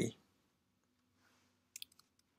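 A man's voice trailing off at the very start, then near silence broken by two faint short clicks near the end.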